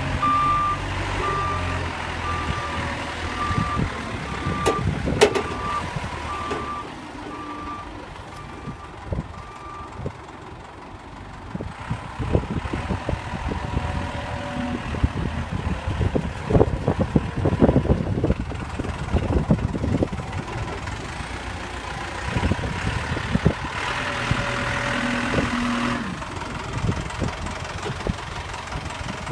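Manitou MC70 rough-terrain forklift's diesel engine running as the machine reverses, its reversing alarm beeping steadily and growing fainter until it stops about ten seconds in. The forklift then drives on with the engine running, and a run of clattering knocks comes through in the middle stretch.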